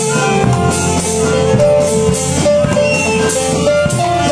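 Live band music: saxophones and clarinet playing held notes together with a rock band, with a steady drum beat.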